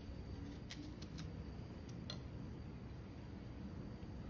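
Faint, sparse clicks and taps of a small kitchen knife and fresh berries against a glass bowl as strawberries are hulled, over low room hum.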